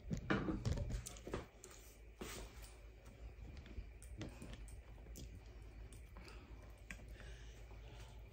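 Faint scattered clicks and light knocks of a phone camera being handled and repositioned, a few close together in the first second and a half and then sparser, over a low steady hum.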